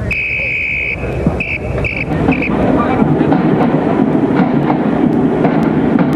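A shrill whistle-like tone: one long note, then three short ones, over a loud noisy din that swells and holds steady from about halfway in.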